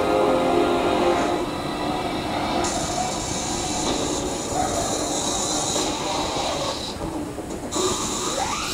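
Film-trailer soundtrack: held music notes from the studio logo fade out in the first second, then a long, steady rushing rumble sound effect takes over. It grows brighter and hissier about two and a half seconds in and cuts out briefly near the end.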